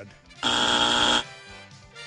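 A game-show buzzer sound effect: one steady, flat buzz lasting under a second, starting and stopping abruptly about half a second in.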